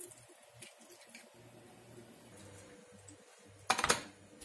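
A kitchen knife cutting through a raw puff-pastry sausage roll, its blade making a few faint clicks on the countertop. Just before the end comes a short, loud clatter of clicks.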